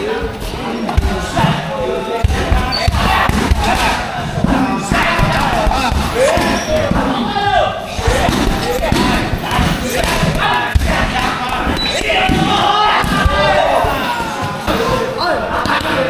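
Gloved punches and kicks thudding into a heavy punching bag, blow after blow at an uneven pace, over people's voices.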